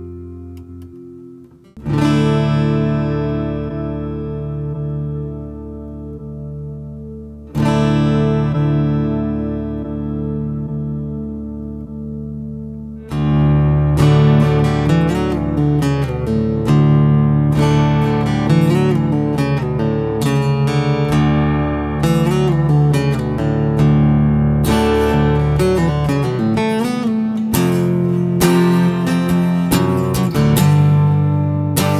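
Godin Multiac Steel Duet Ambiance steel-string electro-acoustic guitar (chambered mahogany body, solid spruce top) played plugged in, heard through its sound-imaging microphone setting. Two strummed chords are each left to ring and die away, then about halfway through the playing turns louder and busier, with rhythmic strumming and picked notes.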